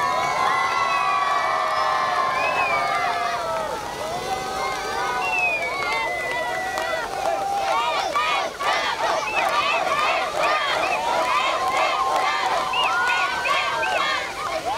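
A crowd of many people cheering and shouting at once as a trophy is held aloft, with long whoops at first and a dense run of excited shouts from about eight seconds in.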